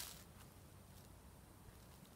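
Near silence: only a faint, steady low background noise, with a brief short noise at the very start.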